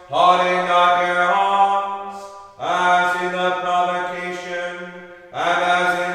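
Chant, sung in long held tones over a steady low drone, in phrases about two and a half seconds long, each starting strongly and fading away.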